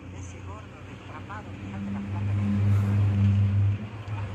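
Ferrari engine running with a steady low note that gets clearly louder from about halfway through and drops just before the end, with faint crowd voices.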